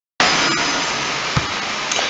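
A steady hiss of background noise that starts abruptly just after the beginning, with a single short low thump about one and a half seconds in.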